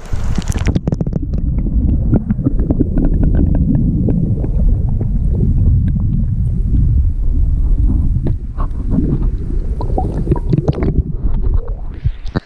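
River water heard through an action camera held underwater: a loud, muffled, low rumble and gurgle of the current, dotted with many small clicks and ticks. The sound drops away near the end.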